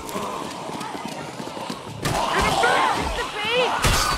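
A film soundtrack. For about two seconds there are light, quick footfalls. Then a louder tangle of overlapping growling, groaning voices begins, the sound of walkers and fighters clashing.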